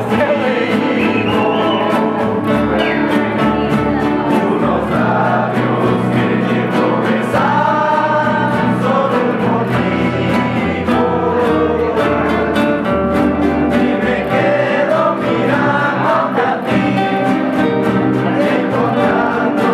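A rondalla of young male voices singing together over several strummed nylon-string acoustic guitars and an upright bass, playing a steady strummed rhythm.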